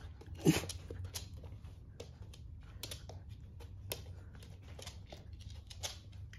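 Two small dogs play-wrestling on a hard floor: scuffling, with repeated clicks and scrapes of claws on the floor. There is one louder, sharp sound about half a second in.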